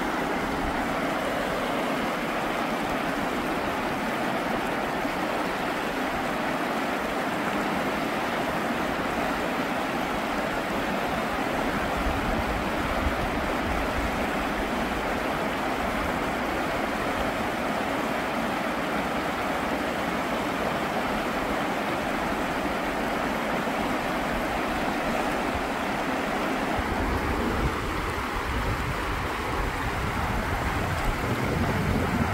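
Fast, shallow river rushing over rocks in rapids: a steady wash of whitewater noise. A low rumble joins it near the end.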